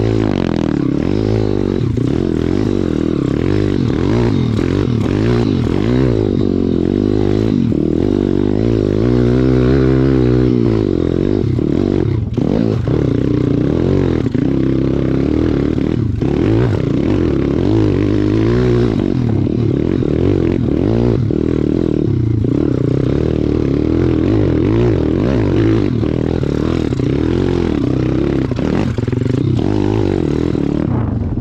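Pit bike's single-cylinder four-stroke engine running under changing throttle, the revs rising and falling throughout as it climbs over rough ground. There are occasional knocks and rattles.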